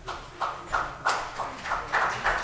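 A run of short, sharp knocks, about three a second, starting a little under half a second in.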